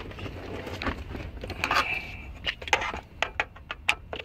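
Sharp metal clicks and a short scrape from a screwdriver and hands working at a car radio's steel mounting bracket and its Phillips screws. The clicks come quickly near the end.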